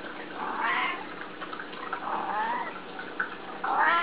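Domestic cat meowing three times, about a second and a half apart, the last call the loudest: cats begging for food at feeding time.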